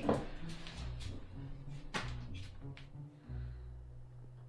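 Low, steady music from the film's score, with a few short, sharp clicks and rustles of handling over it in the first three seconds.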